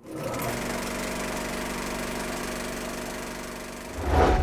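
A steady mechanical whirr with a fast clatter over a low hum, starting suddenly from silence and easing off slightly toward the end.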